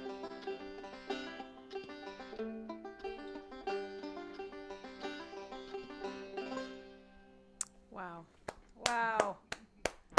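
Banjo picking the closing notes of a song, which die away about seven seconds in. A woman's voice follows, laughing, in the last two seconds.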